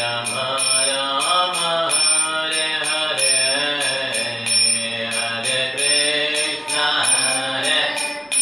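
A man chanting devotional verses in a melodic style, one voice gliding between notes and holding each for a second or more, with a steady high ringing accompaniment behind it.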